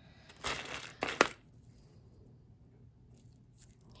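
A pile of costume jewelry shifting and rattling in a tray as a hand rummages through it, with one sharp click about a second in.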